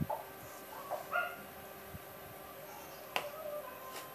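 A few short, high-pitched animal calls in the first second and a half, then a single sharp click about three seconds in.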